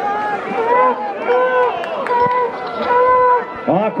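Several men shouting and yelling, with drawn-out calls overlapping one another.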